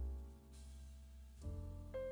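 Quiet background music: sustained piano chords over a deep bass, with a new chord coming in about one and a half seconds in.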